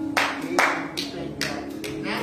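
Scattered hand claps, about five, irregularly spaced and echoing, over a held church keyboard chord.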